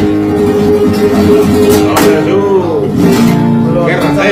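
Flamenco guitar being played, notes and chords ringing.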